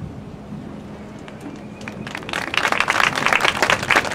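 Audience in the stands clapping, starting about halfway through and building in loudness.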